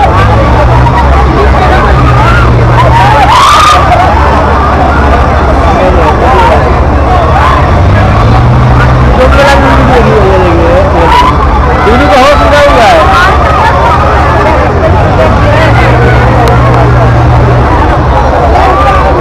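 Crowd babble and riders' shouts over the loud, steady low rumble of a spinning fairground ride's machinery. A deeper hum swells in three times, near the start, around the middle and near the end.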